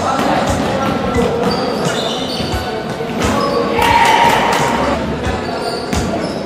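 A basketball bouncing on a wooden gym floor during play, a series of sharp thuds, with players' voices calling out and short high squeaks, all echoing in a large sports hall.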